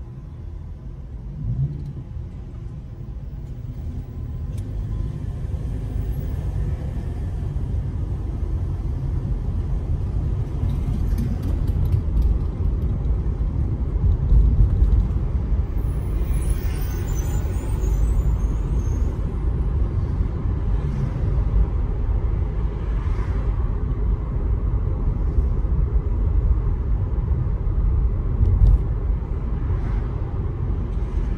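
Car interior with low engine and road rumble that grows louder over the first several seconds as the car moves off from a stop, then holds steady while cruising. A brief hiss comes about halfway through.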